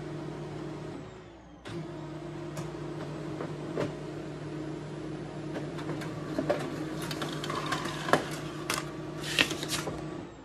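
Colour laser copier running a single copy: a steady motor hum that dips briefly about a second in and picks up again, with clicks and paper rattles growing toward the end as the sheet of heavy cover paper comes out.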